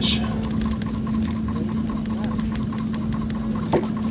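A boat motor running with a steady, even hum over a low rumble, with a single light knock near the end.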